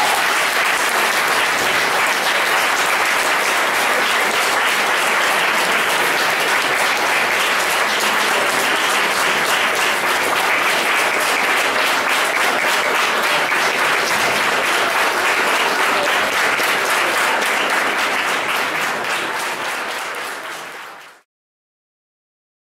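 Audience applauding steadily: a dense, even clatter of many hands clapping that thins out in the last few seconds, then cuts off abruptly near the end.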